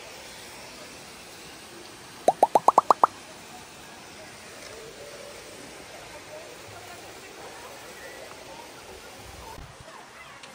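A quick run of seven short upward-sliding tones, each pitched higher than the last, lasting under a second, much louder than everything around it. Under it are faint distant voices in open-air ambience.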